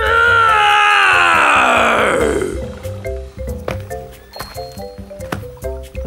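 A cartoon dinosaur's voiced roar, loud and falling steadily in pitch over about two and a half seconds, then light background music with short plucked notes and clicks.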